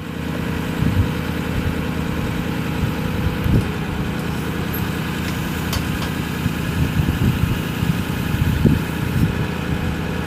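2008 Ford F550 Super Duty's 6.4L V8 diesel engine idling steadily.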